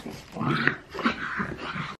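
A pug making short noises in two spells while being stroked.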